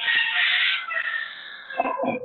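A rooster crowing: one long, high call that fades out about three-quarters of the way through, picked up over a video call. A shorter, lower sound follows near the end.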